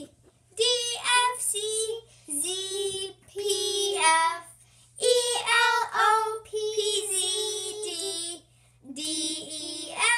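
A young girl singing a tune in four phrases with long held notes, breaking off briefly between them.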